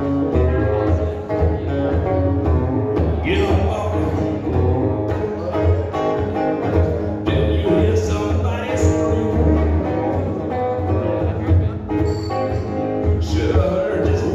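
Live rock music: a solid-body electric guitar played through an amplifier over a backing with a strong, steady bass.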